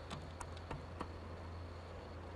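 A steady low hum with a faint, thin high whine over it, and four soft clicks in the first second.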